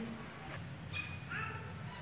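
A few short, high bird chirps, one about a second in and a rising one just after, over a low steady background rumble.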